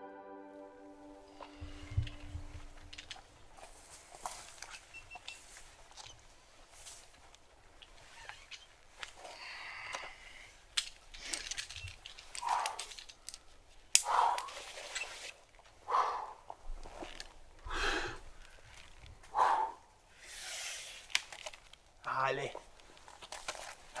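A rock climber's forceful grunting exhalations, one with each hard move, coming every second or two and louder from about halfway through. Near the end a spectator shouts "allez" in encouragement.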